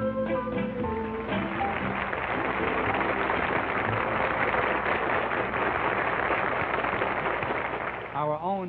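A piano-led band number ends on its closing notes about a second and a half in, and a studio audience then applauds steadily.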